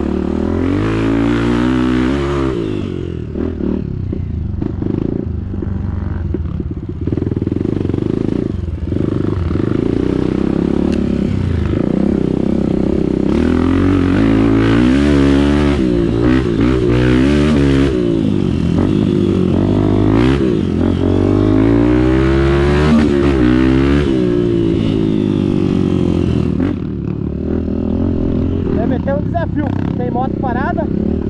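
Honda XR250 Tornado's single-cylinder four-stroke engine under trail riding, revving up and down again and again as the throttle is worked, loudest through the middle stretch and easing off near the end.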